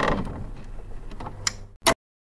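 Sound effect for an animated end title: mechanical-sounding clicking and rattling over a low hum, with a sharp click about one and a half seconds in and another just before it cuts off suddenly.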